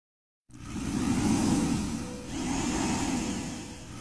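A low rushing noise that starts half a second in, swells twice and fades toward the end.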